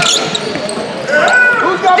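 A basketball dribbled on a hardwood gym floor during play, echoing in a large gym, with shouting voices partway through.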